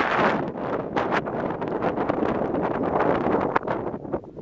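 Wind buffeting the microphone, a steady rough rumble, with a few short knocks about a second in.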